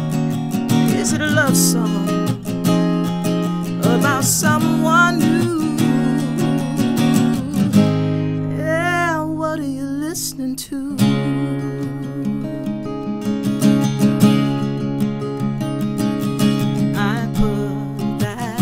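Acoustic guitar strummed in a steady rhythm while a woman sings long, wavering notes over it.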